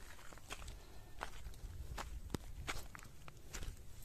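Footsteps on soil, a series of irregular crunching steps a few per second, over a low steady rumble.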